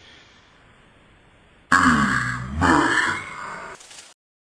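A man's deep laugh in two long bursts, starting after a short pause.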